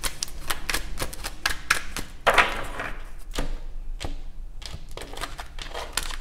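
A deck of tarot cards being shuffled by hand: a quick run of card-slapping clicks, about six a second, with a louder swish of cards about two seconds in.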